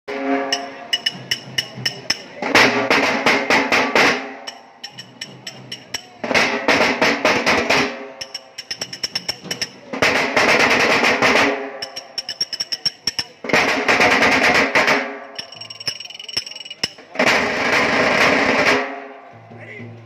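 Nashik dhol drums beaten with sticks in a repeating pattern: spaced single strokes swell into loud, dense rolls lasting about a second and a half, five times over, roughly every four seconds. The drumming stops shortly before the end.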